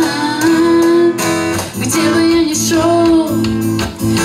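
A woman singing a worship song, holding long notes while strumming an acoustic guitar.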